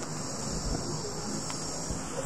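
Steady high-pitched background hiss in a gap between spoken phrases, with no distinct events.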